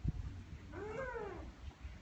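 A brief soft knock, then a single drawn-out call, about a second long, that rises and then falls in pitch.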